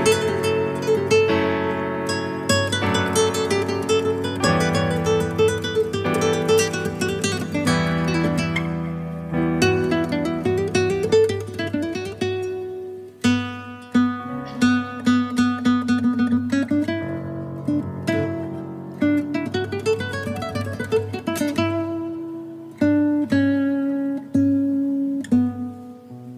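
Instrumental background music played on plucked acoustic guitar, a steady run of picked notes.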